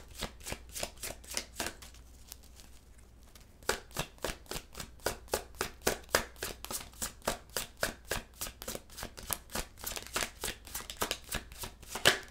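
A tarot deck being shuffled by hand: a quick, even run of card clicks about four or five a second. There is a pause of about a second and a half a couple of seconds in, then the shuffling resumes.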